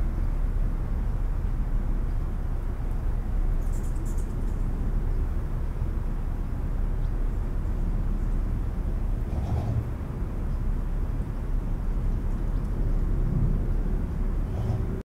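Residential street ambience recorded binaurally on a Sennheiser Ambeo headset: a steady low rumble of wind on the unprotected microphones and distant traffic, with brief high chirps about four seconds in.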